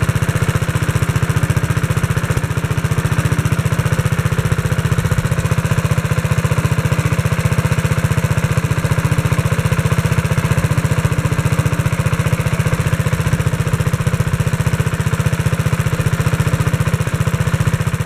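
Kohler K91 single-cylinder engine on a 1957 Wheel Horse RJ-35 garden tractor running steadily and evenly, warming up after a cold start.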